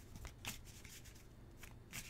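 A deck of tarot cards being shuffled by hand: faint, soft card-on-card slaps with a few light clicks, one about half a second in and a couple near the end.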